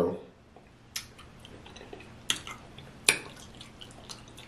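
Wet, close-miked eating sounds of a sauce-covered seafood boil: sticky squelches and lip smacks as the food is pulled apart and eaten. Three sharper clicks come about one, two and a quarter, and three seconds in.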